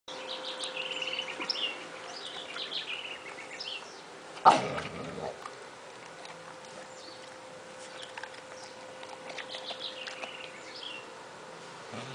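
A dog eating dry kibble from a plastic bowl, with small birds chirping in the background and a faint steady hum. About four and a half seconds in comes one sudden loud sharp sound.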